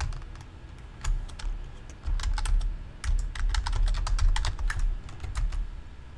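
Typing on a computer keyboard: a few separate keystrokes about a second in, then quick runs of keys from about two seconds on as commands are typed.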